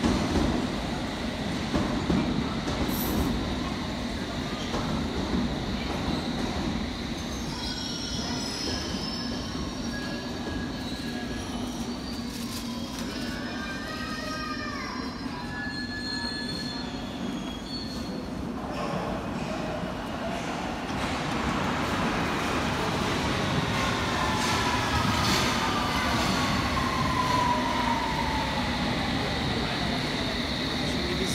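London Underground S7 Stock trains: one runs out of the platform at the start. Over the last ten seconds or so another pulls in, and its traction motors give a falling whine as it slows to a stop.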